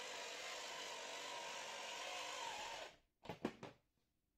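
Brushless outrunner motor and 3D-printed plastic reduction gearbox of a model locomotive running steadily, a faint mechanical whir that stops abruptly a little under three seconds in. A few short clicks follow.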